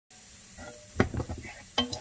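Wooden spoon stirring chopped shallots in a nonstick frying pan, over a light sizzle of the shallots frying, with a sharp knock of the spoon against the pan about a second in.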